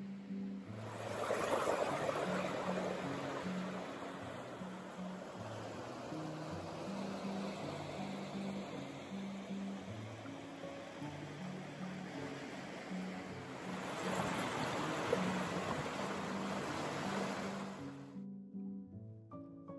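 A creek's rushing water, louder about a second in and again near the end, under background music with a low plucked melody.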